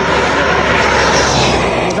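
A vehicle passing close by on the road: a loud rushing noise that builds to a peak about a second in and falls away near the end.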